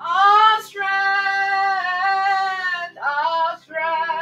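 A woman singing a worship song to electronic keyboard accompaniment: her voice slides up into one long held note, then two shorter phrases, the last with vibrato, over a sustained keyboard chord.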